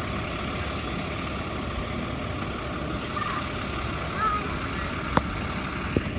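Steady outdoor rumble with no clear pitch, with two short clicks near the end.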